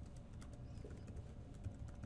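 Typing on a computer keyboard: a string of faint, irregularly spaced keystrokes.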